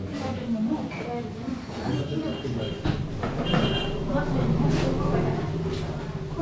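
Indistinct voices of people talking, over a low steady rumble that grows stronger in the second half.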